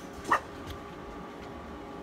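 A pet dog barks once, briefly, about a third of a second in.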